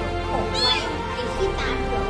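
Newborn kitten mewing in short, high-pitched cries, three in quick succession, over soft background music.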